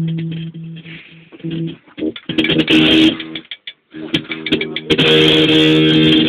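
An amplified, distorted string instrument holding one low droning note with strummed noise over it, breaking off twice and coming back; the dropouts fit a faulty cable connection, a technical hitch.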